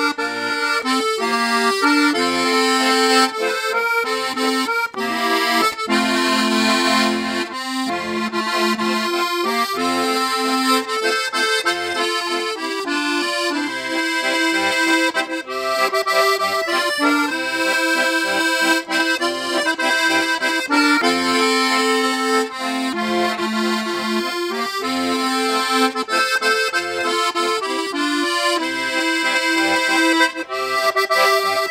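Vintage Italo-American piano accordion with LMM treble reeds being played: a tune with melody and chords in the treble over regular bass notes.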